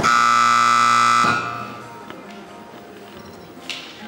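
Electronic arena buzzer sounding one loud, steady tone for just over a second, then echoing away around the indoor hall: the signal for the showjumping rider to start the round.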